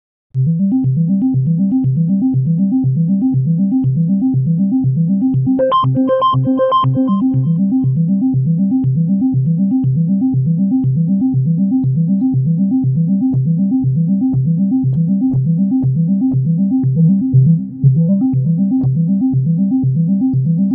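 Korg Nu:Tekt NTS-1 digital synthesizer playing a fast, evenly repeating arpeggio of low notes while its filter and resonance settings are adjusted. About six seconds in, the sound briefly turns brighter, and there is a short drop near the end.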